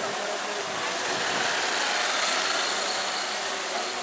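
Busy street ambience: a steady hiss of crowd and motor-traffic noise that grows a little louder in the middle.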